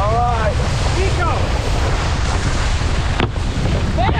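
Wind buffeting an action camera's microphone over the rush of water spray from a cable-towed wakeboard, with short shouts in the first second or so and a brief knock about three seconds in as the board meets a kicker.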